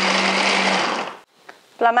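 Electric mini food chopper running as its blades chop chilies and garlic, with a steady motor hum. The motor cuts out about a second in and winds down to a stop.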